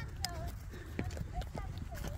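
Horse walking on a stubble field: a few soft, irregular hoofbeats over a steady low rumble.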